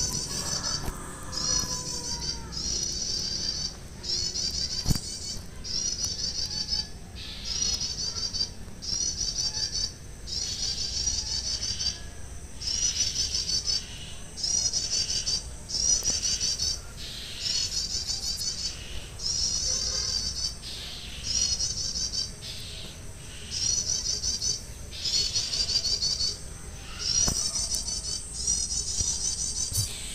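Prinia (prenjak) calling: bursts of rapid, high-pitched trilling notes, each about a second long, repeated with short gaps about once a second without letting up.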